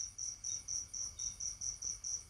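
An insect chirping in a steady, high-pitched pulse, about five chirps a second.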